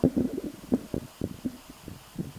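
Handling noise from a handheld camera: a run of soft, irregular knocks and rustles as it is moved and refocused.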